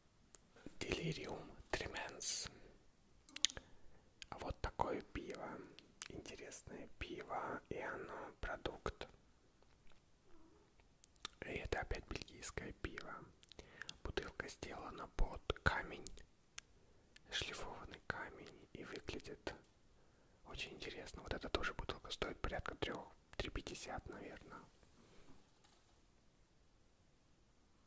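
A man whispering close to the microphone in several stretches with short pauses, with many soft clicks through it.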